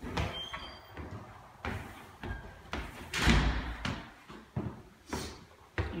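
Footsteps climbing hardwood stairs: a string of dull thuds, roughly one a second, the heaviest about three seconds in.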